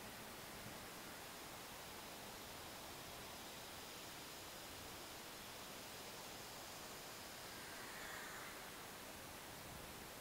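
Faint steady hiss with the distant high whine of a small electric RC model plane's motor just audible, swelling slightly about eight seconds in.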